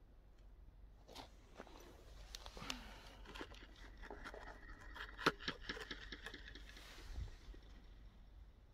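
Faint clicks, scrapes and crunches as a small plastic ghost-box device is grabbed and lifted off a gravel-and-dirt path by hand.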